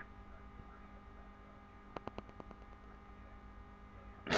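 Steady electrical mains hum on a low-level recording, with a quick run of about six faint clicks about halfway through.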